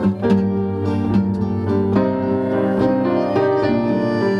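Instrumental passage with no singing: a Hohner Student piano accordion playing sustained notes and chords together with a piano.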